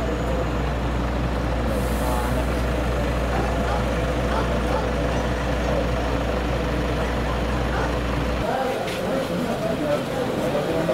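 Idling vehicle engine, a steady low rumble with voices over it; the rumble cuts off suddenly near the end.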